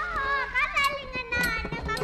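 A child's high-pitched voice speaking stage lines through a microphone.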